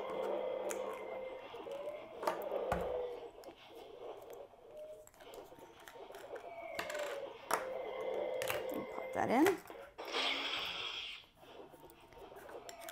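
Small plastic toy kyber crystals clicking and tapping as they are handled and one is fitted into the slot of a Jedi Holocron toy, with scattered light clicks and a faint steady tone underneath. A short hiss comes just after a single spoken word near the end.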